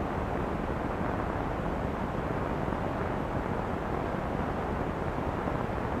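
Steady, even background hiss and rumble with no distinct events, the noise floor of an old film soundtrack between stretches of narration.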